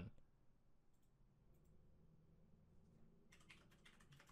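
Near silence: room tone with a few faint clicks, and a quick run of them near the end.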